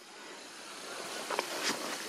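Quiet, steady outdoor background hiss that slowly grows a little louder, with two faint short ticks about a second and a half in.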